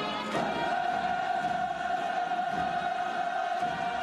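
Choral music: a choir sings, holding one long sustained note from about half a second in.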